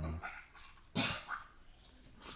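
A dog gagging: a loud, sharp hack about a second in, then a smaller one just after. The gagging comes from hair caught in its throat after licking itself.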